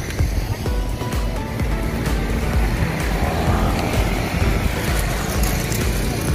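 Street traffic: motor vehicles driving by on a city road, a steady rumble with one passing more loudly in the middle, with music playing along.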